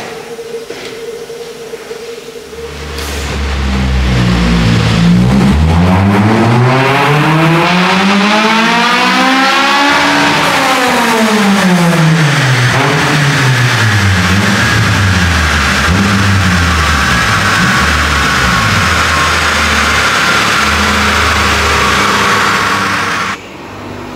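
Honda Civic Type R EP3's 2.0-litre i-VTEC four-cylinder engine on a chassis dyno, revving up through the range to about 8,500 rpm over about seven seconds for a power run, then the revs falling away. A steady loud whirring carries on afterwards and stops shortly before the end.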